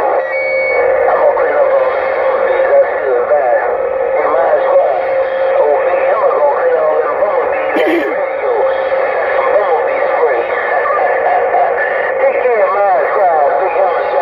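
Uniden Grant XL CB radio receiving on busy channel 6: several strong stations transmitting at once, their voices piled over each other into an unintelligible jumble with a steady heterodyne whistle underneath. This is what operators call "bumblebees in my radio".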